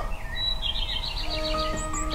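A quick run of short high chirps, then held notes of music come in about halfway through, the start of a ringtone tune.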